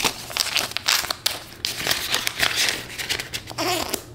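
Canadian polymer banknotes being handled and counted, then slid into a clear plastic cash envelope. The sound is a run of crisp, irregular rustling and crinkling with quick flicks of the notes.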